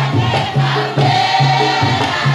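Maoulida shengué, a Mahorais devotional chant: a group of voices singing together in chorus over a repeating low beat.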